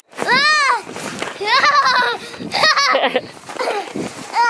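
A young child's high-pitched wordless squeals, three in a row: the first rises and falls, the next two waver. Between them comes the scuffing of boots in snow.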